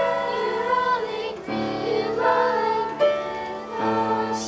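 Children's choir singing in harmony, several voices holding notes together, with the chord changing about every one to two seconds.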